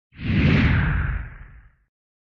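Whoosh sound effect of a logo intro sting: a single swell of hiss over a low rumble that rises quickly, peaks about half a second in and fades away before two seconds.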